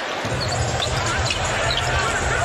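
Live basketball game sound in an arena: a ball dribbling on the hardwood court under a steady crowd din, with short, high sneaker squeaks.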